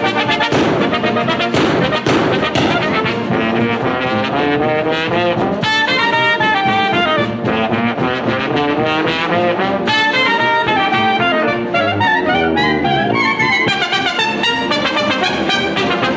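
A TV show's opening theme tune, played by a band with brass to the fore, a trombone and trumpet melody over a steady accompaniment.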